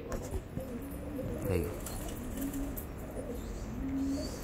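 Domestic pigeons cooing, a series of low, rolling coos one after another.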